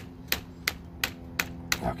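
Cordless drill held on a screw driven into the oak log, its clutch slipping with sharp, even clicks about three a second as the screw seats.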